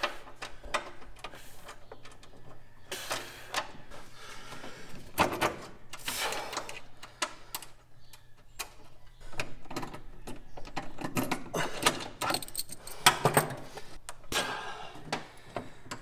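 Irregular clicks, scrapes and light knocks of hand-tool work as a mounting bolt is worked into a rivnut behind the heater unit under the dash; the bolt keeps going in cross-threaded, in a rivnut thought to be stripped.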